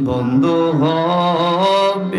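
A man singing a slow devotional melody into a microphone, holding long notes that waver and slide between pitches.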